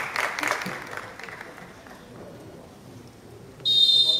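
Spectators clapping and calling in the stands, fading out after about a second. Just before the end, a sudden loud, shrill referee's whistle blast.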